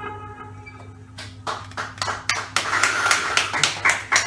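The last sustained note of a saxophone and electric guitar duo fades out, then a small audience starts clapping about a second in, the claps growing denser toward the end.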